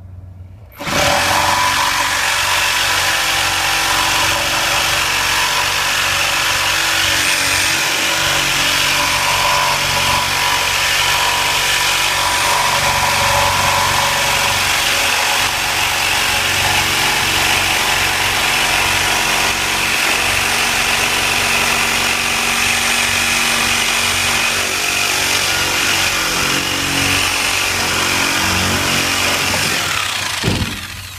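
Corded reciprocating saw running continuously, cutting through rough-sawn lumber. It starts about a second in and cuts off just before the end.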